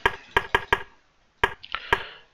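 Computer mouse clicks: about half a dozen sharp clicks at irregular spacing, with a pause in the middle, as moves are stepped through on a chess board program.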